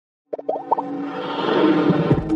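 Intro music with sound effects: after a brief silence, a quick run of short plopping notes about a third of a second in, then a steady music bed.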